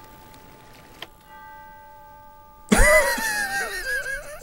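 A man laughing loudly near the end, after a single click and a soft sustained chord of steady tones lasting about a second and a half.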